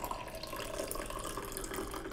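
Coffee poured in a steady stream from a metal pitcher into a mug.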